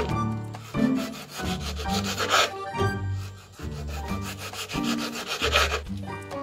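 Kitchen knife sawing through a ripe tomato onto a wooden cutting board, a few scraping slicing strokes, over soft background music.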